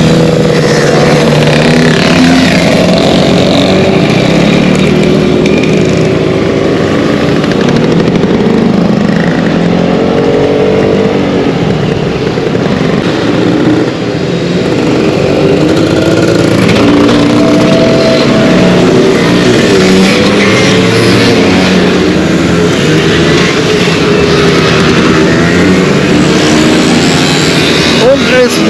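A convoy of many small two-stroke scooter engines (Vespas and Lambrettas) running together, their notes overlapping and rising and falling as the riders ride on. About halfway there is a short dip, after which the scooters pass one after another.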